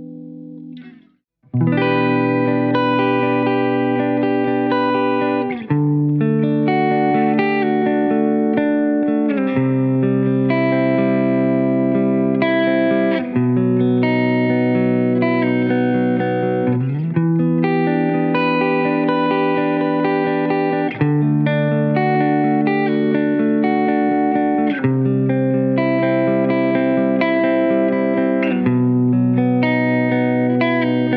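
Schecter C-6 Plus twin-humbucker electric guitar played through a clean amp tone: a slow progression of ringing chords, a new chord picked roughly every four seconds. The first chord dies away and there is a brief break about a second in before the progression starts.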